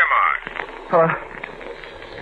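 Speech only: a man's voice in a radio-drama dialogue, with a hesitant 'uh'.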